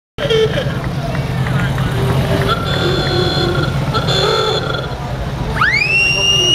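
Antique cars running slowly past, a steady low engine rumble under crowd chatter. Near the end an old-style klaxon car horn sounds one note that climbs steeply in pitch and then holds.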